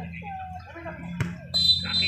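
Faint shouts of players during a football match, a sharp kick of the ball just after a second in, then a short, steady, high whistle blast near the end.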